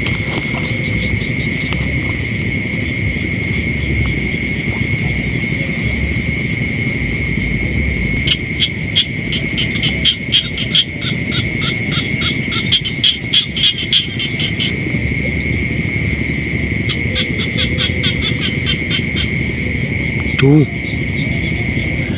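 Night chorus of insects and frogs: a steady high insect trill over a low rumble, with bursts of fast pulsed frog calls from about a third of the way in, and again a little later. A short louder call or voice sounds once near the end.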